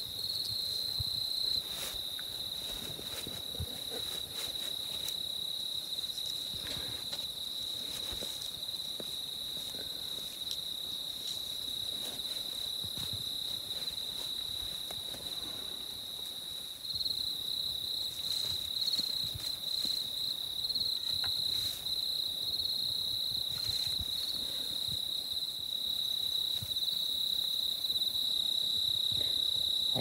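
Crickets trilling in one unbroken high-pitched drone, a little louder from about halfway through, with a few faint knocks and rustles.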